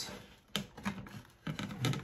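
Light plastic clicks and taps, about five of them, as an ADT Command security panel's housing is handled and fitted against its wall-mounted faceplate.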